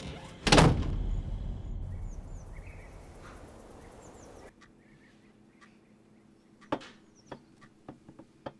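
A door slams shut with a heavy thud about half a second in, its low boom fading away over the next few seconds. Later, against a quiet background, come a few light knocks and clicks.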